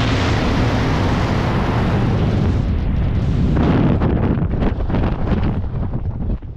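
Rushing freefall wind buffeting the camera microphone, thinning out about three and a half seconds in as the parachute opens and then turning into uneven gusts.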